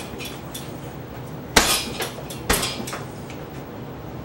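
Sharp knocks on a hardwood floor during a martial-arts stepping kick: three knocks about half a second apart, starting about one and a half seconds in, the first the loudest.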